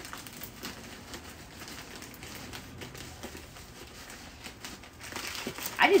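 Faint crinkling of a holographic plastic mailer bag being handled and folded, with soft scattered rustles and ticks.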